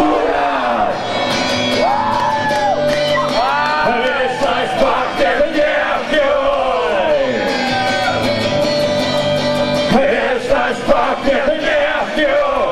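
A man singing into a microphone while strumming an electric guitar, performed live.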